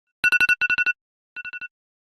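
Electronic alarm or ringtone beeping: quick groups of high, rapid beeps, two loud groups followed by fainter repeats that fade away like an echo.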